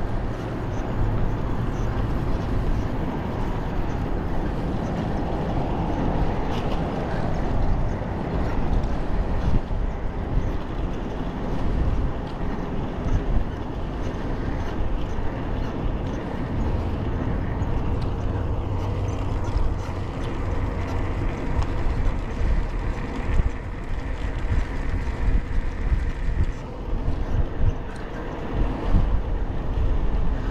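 Wind rushing over the microphone of a bicycle-mounted camera while riding, with road traffic passing alongside.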